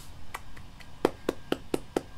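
One person clapping his hands: about seven separate claps, spaced out at first and then coming at about four a second in the second half.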